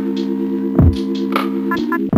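Lo-fi hip hop instrumental beat with no vocals: a sustained low synth chord with a pulsing tone, under kick and snare hits spaced about half a second to a second apart.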